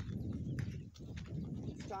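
Footsteps on loose, freshly graded dirt, a few soft irregular steps under a low rumble. A man's voice starts near the end.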